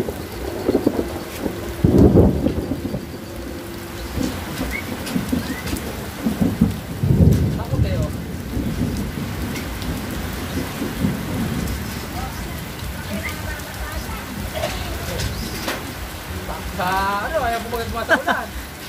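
Steady rain falling, with heavier low rumbles about two and seven seconds in. A short run of rising calls comes near the end.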